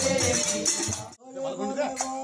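Kirtan: a group singing devotional songs to jingling hand percussion. About a second in the sound cuts off abruptly. It resumes as singing voices without the jingle.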